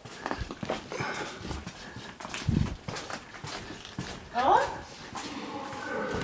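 Indistinct, wordless voice sounds. About four and a half seconds in comes a short rising sound, the loudest moment.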